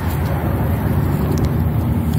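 Steady low rumble of wind buffeting a phone's microphone outdoors.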